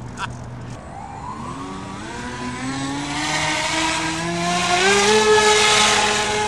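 Battery-electric motors and propellers of an RC foam F-35 STOVL model spinning up: whines that rise in pitch over several seconds, then hold steady at high throttle, with a growing rush of air that the pilot hears as wind not going towards propulsion, perhaps from the front motor tucked inside the body.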